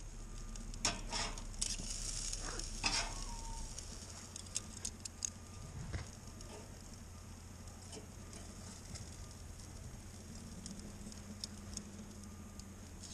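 Rustling, crackling handling noise on the camera's microphone as it is set up, with several sharp clicks in the first three seconds and a single knock about six seconds in, over a faint steady hum.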